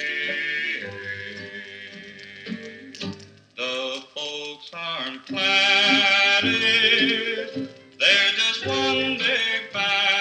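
A 1957 country/rockabilly 45 rpm record playing on a turntable, in an instrumental break without singing. The playing thins to short, separate notes through the middle, then comes back fuller and louder about halfway through.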